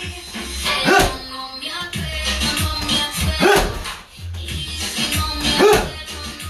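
Music with a steady low beat, with a short loud rising-and-falling cry three times.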